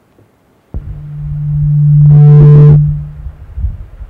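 A sound system in a meeting room gives out a loud, low, steady tone. It starts with a sudden click, swells for about two seconds with fainter higher tones at its peak, then fades away.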